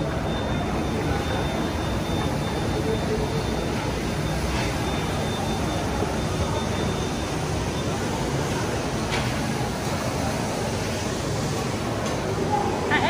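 Steady background noise of a busy indoor shopping mall, with indistinct voices under a constant hum. A faint thin high tone runs through the first half.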